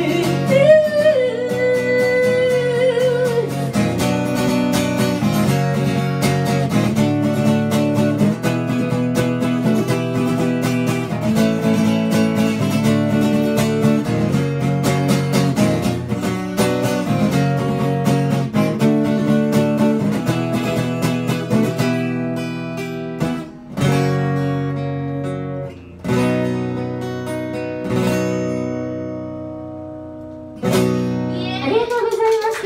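Acoustic guitar playing a song's instrumental outro, under a woman's sung note that wavers and fades out in the first few seconds. About two-thirds of the way in, the playing slows into a few separate chords, each left ringing before the next.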